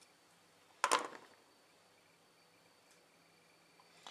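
One sharp snip about a second in as small flush-cut wire snips cut through a thin piece of wire, then faint room tone.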